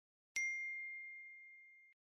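A single bell-like ding from a notification-bell sound effect, struck about a third of a second in. It rings as one clear tone that fades away, then is cut off suddenly just before the end.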